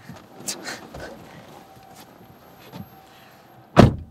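A car door slammed shut, heard from inside the cabin: one loud thud near the end, after a few seconds of light rustling and small knocks as the driver climbs out. The cabin goes quiet once the door is shut.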